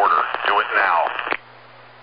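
A short spoken voice clip with a narrow, radio-like sound over a steady hum. It cuts off about two-thirds of the way in, leaving a faint hiss.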